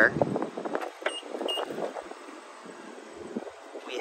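Light clicks and knocks of a car's rear door being opened by its handle, over faint wind noise. Two short high beeps sound about a second in.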